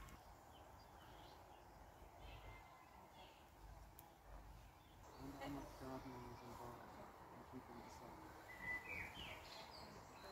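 Quiet outdoor garden ambience, near silence, with faint bird chirps now and then. Faint distant voices come in about halfway through.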